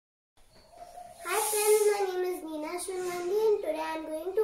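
A young girl speaking, her voice starting about a second in.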